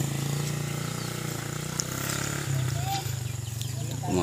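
Small motorcycle engine running steadily with a low, even hum that shifts slightly about halfway through.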